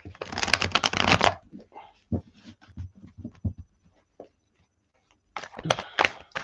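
A deck of oversized tarot cards being shuffled by hand: a dense run of card-on-card rustling for about a second, then scattered soft taps and slides, a brief pause, and another burst of shuffling near the end.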